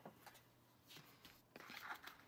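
Near silence with a few faint clicks, then near the end a soft rustle of a small brown paper bag being handled.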